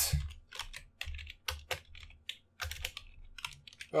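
Typing on a computer keyboard: a run of irregularly spaced key clicks.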